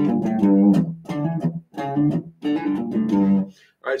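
Electric guitar playing a blues-rock riff of single picked notes that pivots off the open low E string, with the end of the lick played in first position. The notes stop shortly before the end.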